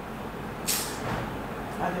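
Low room noise in a pause between speech, with one short hiss about two-thirds of a second in. A voice starts again near the end.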